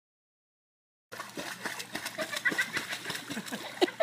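Silence for about a second, then water splashing in a swimming pool as a puppy paddles at the wall, with people's voices.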